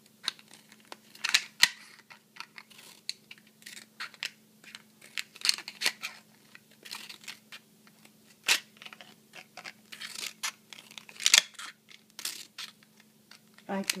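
Scissors cutting into a thin clear plastic bottle: irregular snips and crackles of the plastic, some sharp and loud, over a faint steady hum.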